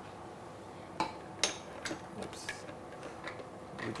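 Light clicks and knocks of the plastic parts of a Beaba Babycook food maker being handled as its bowl and steamer basket are taken out: a sharper click about a second in, another just after, then a few smaller taps.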